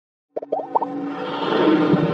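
Animated intro sting: after a brief silence, a quick run of short rising plops, then intro music that swells steadily louder.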